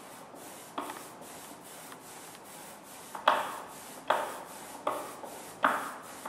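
Rubber brayer being rolled back and forth through printing ink to ink a printing plate: a sticky rolling hiss, with a sharper swish at the start of each stroke. The strokes come closer together and louder in the second half, roughly one every three-quarters of a second.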